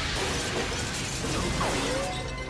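Cartoon battle sound effects: robots being blasted apart with dense metallic crashing and clattering, and electronic zaps that sweep down and back up in pitch twice.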